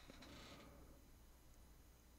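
Near silence: faint room tone with a low hum and a little hiss.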